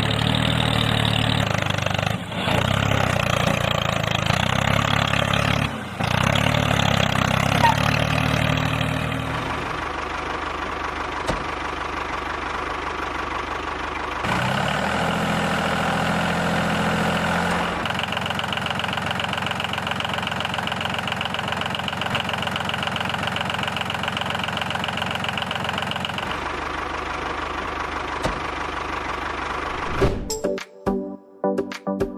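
Tractor engine running steadily, with abrupt changes in pitch and loudness every few seconds. Louder and deeper for the first third, then a quieter, steadier run.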